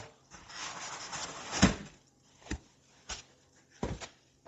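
A white foam packing insert rubbing and scraping as it is pulled out of a cardboard box, followed by four short knocks of handling.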